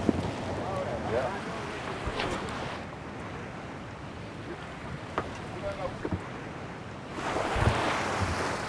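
Wind and lake-water noise around a small wooden boat, with faint distant voices and a few sharp knocks. The hiss thins out about three seconds in and comes back louder near the end.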